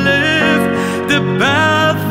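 A man singing a slow ballad line in held, gliding notes with vibrato, over piano and string accompaniment.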